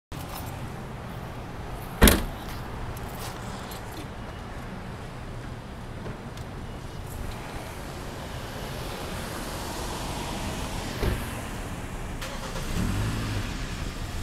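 Outdoor parking-lot ambience with steady car and traffic noise, broken by one sharp knock about two seconds in and a softer one later.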